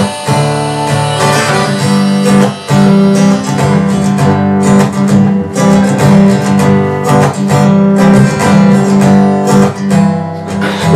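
Steel-string acoustic guitar strummed steadily with a harmonica playing the melody over it: an instrumental break in a trop-rock song.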